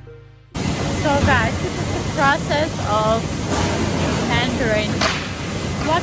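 Soft background music ends half a second in. A mandarin washing and sorting machine then runs with a loud, steady rushing noise as the fruit is carried along its roller conveyor and washed, with voices over it.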